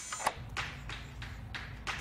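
Sesame smart lock's motor turning the door's deadbolt thumb-turn to unlock it, heard as a run of light clicks about three a second.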